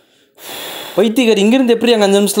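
A man crying out without words: a breathy gasp, then about a second in a loud wailing cry whose pitch rises and falls.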